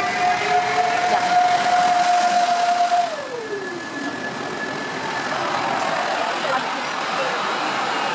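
Electric passenger train with double-deck coaches pulling in: a steady whine that falls in pitch about three seconds in as the train slows, over the noise of the coaches rolling past.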